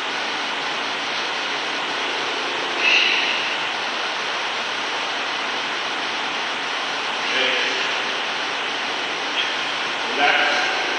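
A steady rushing of air from an electric floor fan running continuously, with two brief louder sounds about three seconds in and again past the seven-second mark.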